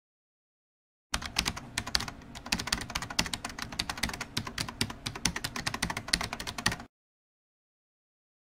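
Rapid, irregular clicking like fast typing on a computer keyboard. It starts abruptly about a second in and cuts off abruptly near the end.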